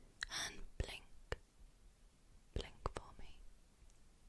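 A woman whispering softly and breathily, with a few sharp clicks between the whispers.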